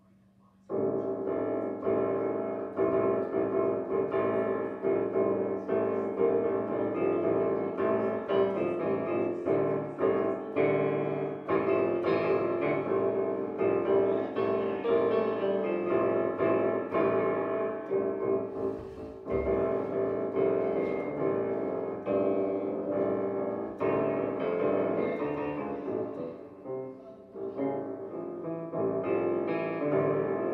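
A digital piano played continuously in a busy piece of chords and melody, starting about a second in, with a brief dip just past the middle.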